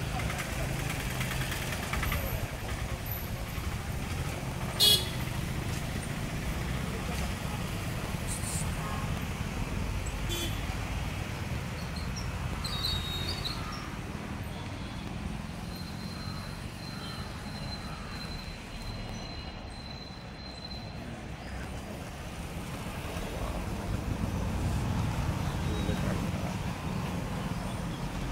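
Street traffic ambience: a steady low rumble of passing vehicles, with short vehicle-horn toots now and then. A single sharp click about five seconds in is the loudest moment.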